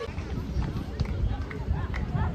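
Unintelligible voices of people talking in an open public space, over a loud, uneven low rumble with knocks on the microphone.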